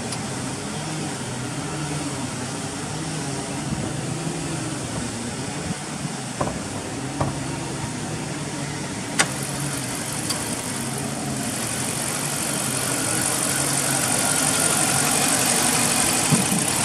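A 2013 Dodge Charger police car's 5.7 L HEMI V8 idling steadily. There is a sharp click about nine seconds in, as the hood latch is released. After that the engine sound grows louder and brighter as the hood is raised.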